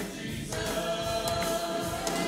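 Voices singing a gospel song in chorus, holding one long note from about half a second in.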